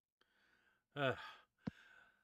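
A short sighing "uh" about a second in, falling in pitch and trailing off into breath, followed by a single faint click; otherwise the line is almost silent.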